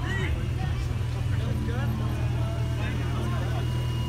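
A car engine idling with a steady low rumble under people talking.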